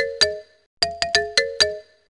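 A short electronic jingle of five quick, chime-like notes, played twice. It is the background sound of a mid-1990s web page playing as the page loads in Internet Explorer 2.0.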